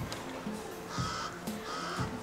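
Two short cawing bird calls about a second in, close together, over background music.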